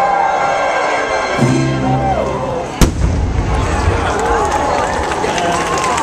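Fireworks over show music from loudspeakers, with one sharp, loud firework bang a little under three seconds in, followed by light crackling and crowd voices.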